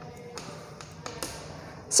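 Chalk writing on a chalkboard: a few short, sharp taps of the chalk against the board, spread across about two seconds.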